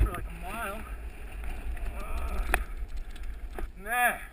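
Wind rumbling on an action camera's microphone as a mountain bike rolls along a dirt trail. A short wavering voice sounds about half a second in, a single sharp click comes a little after the two-second mark, and another voice starts near the end.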